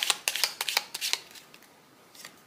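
A deck of Lenormand oracle cards being shuffled by hand: a quick run of crisp card snaps that dies away a little over a second in.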